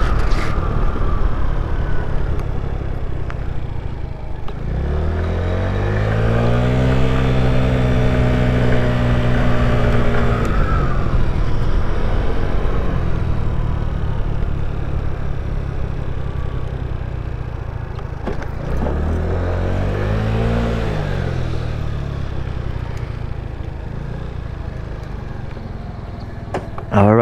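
Boom PYT Revolution 50cc scooter engine heard while riding, with wind rushing over the microphone. Twice it speeds up, its pitch rising, then holding steady for a while, then falling back; the sound drops lower near the end as the scooter slows.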